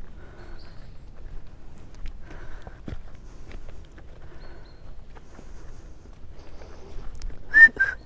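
Horses and a person walking on grass, with soft hoof and foot falls. A brief whistle sounds near the end.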